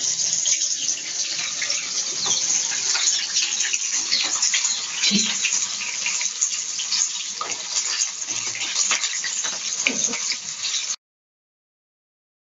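Gram-flour-battered kebab skewers deep-frying in hot oil in a wok: a steady crackling sizzle with scattered sharp pops, which cuts off suddenly near the end.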